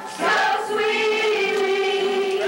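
A group of voices singing together. After a brief dip they come in about a quarter second in and hold one long note.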